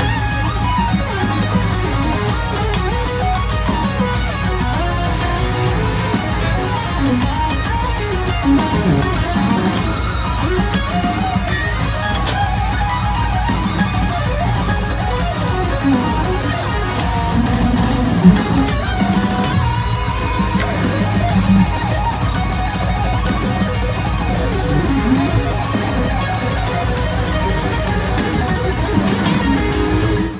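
Electric guitar playing fast, intricate lead lines with wide fretting-hand stretches, continuing without a break.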